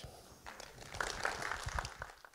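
A small audience clapping briefly, a quick patter of claps strongest in the second half.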